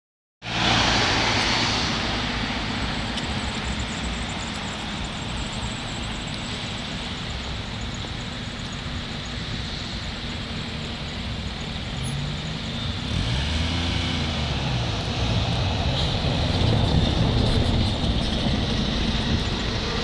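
Street traffic: a car passes close at the very start, then cars go by steadily. From about two-thirds through, a city bus's engine grows louder as it approaches, its pitch rising and falling as it changes speed.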